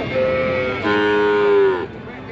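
A calf mooing twice: a short call, then a longer, louder moo about a second in that drops slightly in pitch as it ends.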